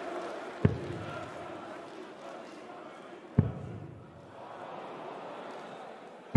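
Two steel-tip darts striking a bristle dartboard, each a single sharp thud, the first about half a second in and the second about three seconds later, over the background noise of a large arena crowd.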